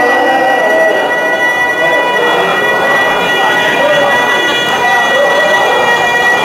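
Devotional verse sung by a man's voice through a loudspeaker system, with a crowd's voices joining in. A steady high-pitched tone rings through the sound system throughout.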